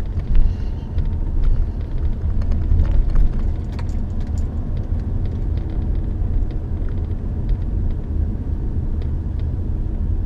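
Steady low rumble of a car's engine and tyres heard from inside the cabin as it drives slowly along a street, with a few faint clicks.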